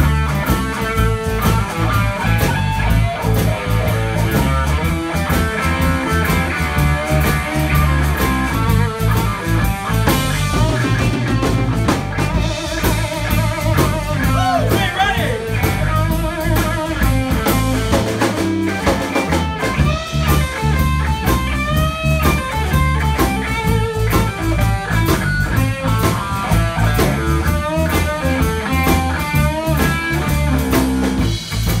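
Live blues-rock band playing: an electric guitar plays lead lines with bent, wavering notes, backed by drums.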